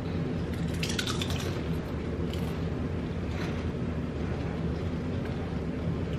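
Several people crunching and chewing Ruffles ridged potato chips, with a few crisp crunches in the first couple of seconds, over a steady low room hum.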